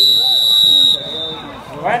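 Referee's whistle: a single steady, high-pitched blast of about a second that then trails off.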